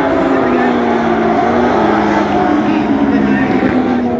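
Several dwarf race cars' motorcycle engines running together around a dirt oval, their pitches sliding slowly up and down as the cars lap, with crowd chatter underneath.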